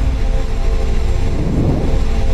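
Cinematic logo-intro music: a deep, steady rumbling drone with sustained low tones held over it.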